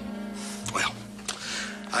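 Soft orchestral background score of sustained strings and brass under the dialogue, with a man's brief vocal sounds starting about half a second in and a spoken word at the very end.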